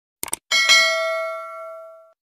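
Subscribe-button animation sound effect: two quick mouse clicks, then a notification bell ding that rings out and fades over about a second and a half.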